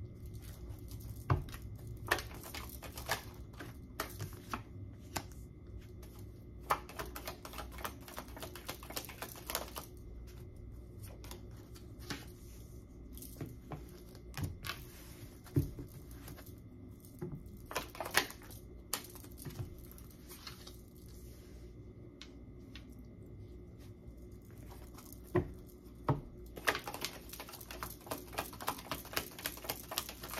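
Tarot cards being handled and shuffled: quick runs of crisp card clicks and flutters with scattered taps and slaps, the densest runs a few seconds in and again near the end.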